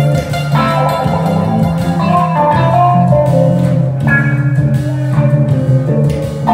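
Live instrumental music: an electric guitar playing a melody over keyboards and a programmed beat, with a steady low bass line.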